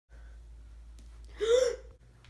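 A boy's short vocal outburst about one and a half seconds in, its pitch rising then falling, over a steady low hum.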